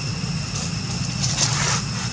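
A steady low hum with a thin, steady high whine over it, and a brief rustle about one and a half seconds in.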